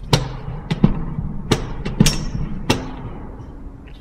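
Footsteps on a hard staircase: about five sharp steps a little over half a second apart, each with a short echo.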